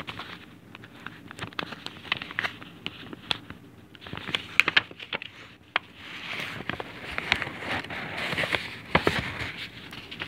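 Fingers picking and rubbing at the paper edge of a Netflix DVD mailer envelope, close to the microphone: scattered crackles and small clicks with bursts of rustling, busiest in the second half.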